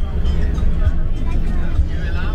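Steady low rumble of a bus's engine and road noise heard from inside the moving cabin, with passengers' voices over it.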